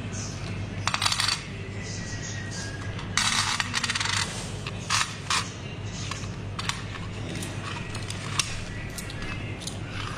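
Small hard objects clinking and jingling, metallic in character, in several short bursts, the longest about a second, with scattered single clicks between them, over a steady low hum.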